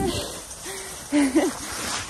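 A woman's short wordless vocal sounds, two brief hums, the second one louder and rising then falling in pitch, over a steady hiss.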